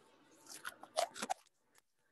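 A quick run of crisp clicks and crackles lasting about a second, which stops about halfway through.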